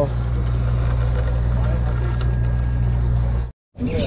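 Sportfishing boat's engine running steadily, a low, even drone. It cuts out abruptly for a moment about three and a half seconds in.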